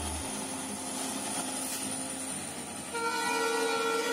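Indian Railways diesel locomotive hauling a freight train past, then sounding its horn in one long, steady blast from about three seconds in.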